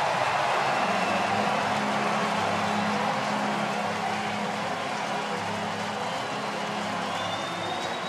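Ballpark crowd cheering a home run, a steady roar that slowly dies down.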